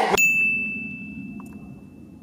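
A single bell-like ding, struck once just after the start and ringing out as it fades away over about two seconds.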